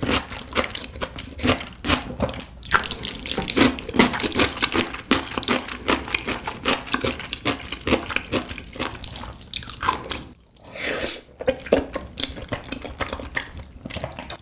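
Close-miked wet eating sounds: chewing and smacking in a dense, irregular run of small clicks, with a short pause about ten seconds in.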